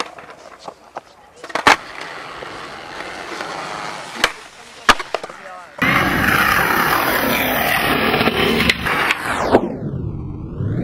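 Skateboard wheels rolling on concrete, with a couple of sharp board clacks. About six seconds in, the sound jumps to a louder, steady rush that carries on, with a swooping sweep near the end.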